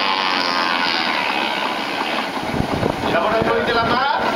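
A car engine running as the car moves off, with a man's voice shouting over it near the end.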